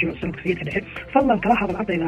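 A voice talking in Somali, narrating steadily, with music underneath.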